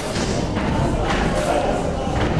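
Kickboxing strikes landing: a few dull thuds of gloved punches and shin-guarded kicks hitting a fighter during an exchange, with voices shouting in the hall.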